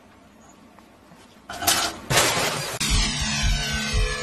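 A quiet stretch, then a loud crash in two bursts about halfway through, followed by background music with a steady beat.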